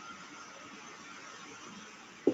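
Faint steady background hiss with a thin, high, steady tone: room tone picked up by the microphone, with no distinct sound event.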